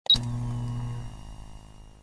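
Intro logo sound effect: a sudden hit with a brief high blip, followed by a low, pitched tone that fades away over about two seconds.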